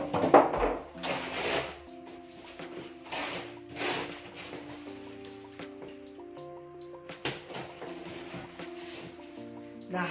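Background music playing steadily under several bursts of rustling and knocking as a monitor speaker cabinet is lifted out of its packaging. The loudest handling noise comes right at the start, with smaller bursts after about a second, around three to four seconds in, and a short knock near seven seconds.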